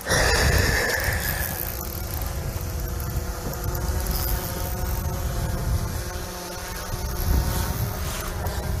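Wind buffeting the microphone with an uneven low rumble, over a steady faint hum from the boat; a high squeal sounds for the first two seconds.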